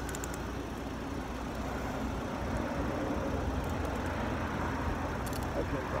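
Steady low rumble of a vehicle engine idling nearby, with faint muffled background sounds and a few light clicks about five seconds in.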